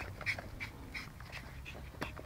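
Puppies whimpering, with a few short, high squeaks spaced through the moment.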